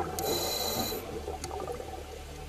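Underwater water noise: a muffled, steady rumble with a brief hiss near the start.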